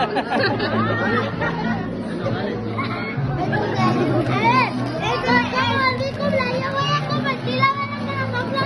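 Excited voices, with a child's among them, talking and calling out over background music with steady bass notes. From about three seconds in there is a faint, steady high hiss, a sparkler candle fizzing.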